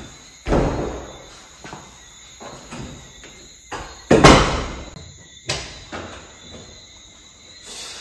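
Wooden interior door banging: a heavy thud about half a second in, the loudest bang a little after four seconds, and another bang about a second after that, with smaller knocks between.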